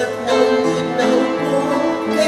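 Upright piano accompaniment under a man's solo singing voice in a slow ballad, with sustained notes changing every half second or so.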